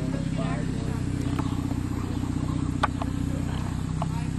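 A steady low hum from an idling engine, with faint distant voices and one sharp click about three seconds in.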